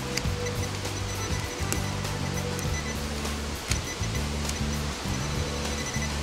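Background music of sustained low notes that change every second or so, with a few faint clicks.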